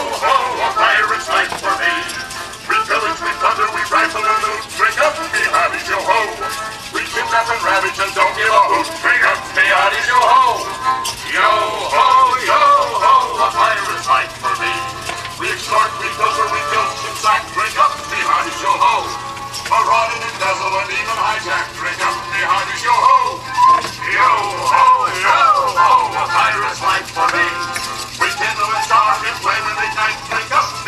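Voices singing a pirate song over musical backing, played as the song of a set of animatronic talking skulls.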